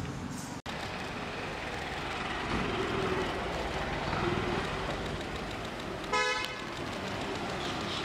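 Steady street traffic noise, with one short vehicle horn toot about six seconds in.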